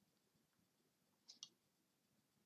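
Near silence with two faint clicks in quick succession about a second and a half in, a computer mouse being clicked.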